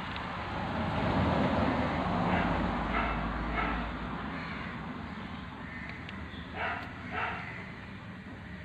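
Water sloshing and a plastic bag rustling as small fish are let out of the bag into a pond, loudest in the first few seconds. A few short animal calls sound in the background, three in quick succession midway and two more near the end.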